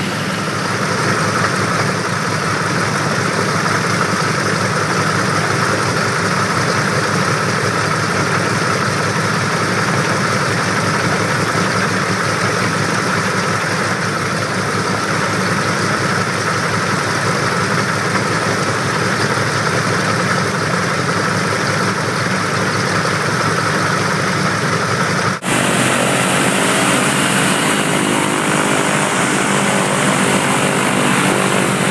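The twin Pratt & Whitney R-1830 Twin Wasp radial engines of a Douglas C-47 running steadily on the ground with propellers turning, the engines being warmed after seven months of sitting. About 25 seconds in the sound drops out for an instant, then carries on with a slightly different tone.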